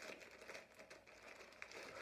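Plastic poly mailer bag crinkling faintly in irregular small crackles as hands grip and pull at it to open it.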